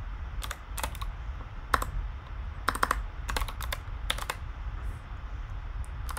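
Computer keyboard being typed on: separate keystrokes clicking in short, irregular runs, with a steady low hum underneath.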